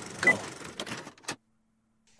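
A word is spoken over a hissy background, with a short high electronic beep about a quarter-second in, higher than the two beeps before it, as in a countdown. A few clicks follow, then the audio cuts off abruptly to near silence with a faint hum.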